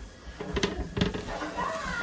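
A metal tray of chiles set down on a glass-top stove with a couple of sharp clicks, while a voice makes wordless sounds in the background.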